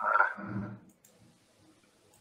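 A brief, breathy laugh, under a second long, near the start.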